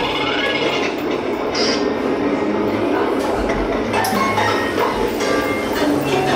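Animated dishwasher prop running its cycle: a steady churning, mechanical sound with water spraying over the dishes behind its lit window.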